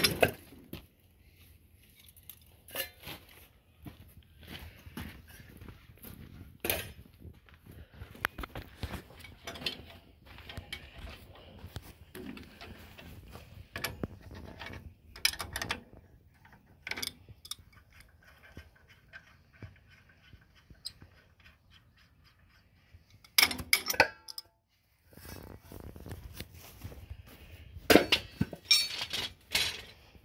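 Steel wrench and cultivator hardware clinking and knocking off and on as disc hillers are unbolted from a tractor cultivator's shanks, with louder clanks near the end.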